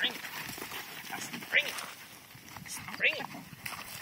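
Working kelpies barking at a calf: three short barks about a second and a half apart, over scuffling in the dirt.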